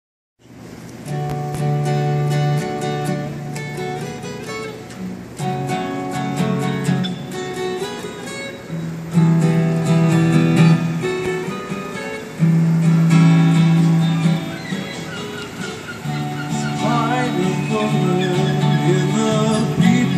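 Acoustic guitar played solo, strummed chords ringing, with the chord changing every three to four seconds.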